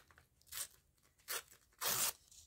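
A scrap of paper being torn by hand in three short rips, the last the loudest and longest.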